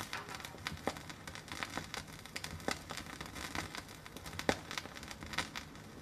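Vinyl LP lead-in groove under the stylus: surface noise of steady hiss with irregular crackles and pops, and a faint low hum; the loudest pop comes about four and a half seconds in.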